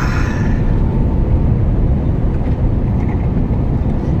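Steady engine and road noise of a truck on the move, heard from inside the cab as a low, even rumble.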